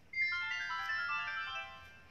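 A smartphone playing a short electronic ringtone-style jingle: a quick run of bright notes that starts abruptly and lasts about a second and a half.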